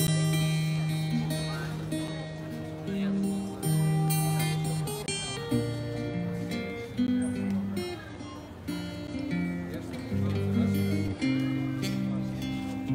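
Live music: an amplified acoustic guitar playing a passage of chords and melody notes that change every second or two.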